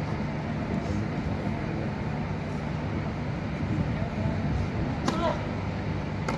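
Tennis ball struck by a racket, one sharp crack about five seconds in, over a steady background murmur of spectators and a low hum.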